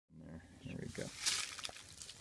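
A person's low, indistinct voice for about the first second, then a brief hiss about halfway through.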